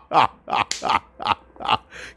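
A man laughing hard: a run of short, rhythmic ha-ha's, about three a second, each dropping in pitch.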